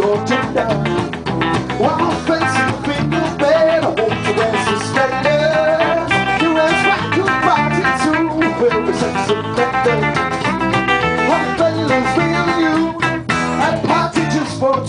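A small rock band playing live: acoustic guitar strummed in a steady rhythm together with electric guitar and bass guitar. This is the instrumental opening of a song, before the vocals come in.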